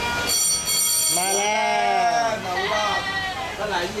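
A person calling out "มาเลย" ("come on") in one long drawn-out voice that rises and then falls in pitch, with more talk after it. A high steady tone lasting about a second comes just before the call.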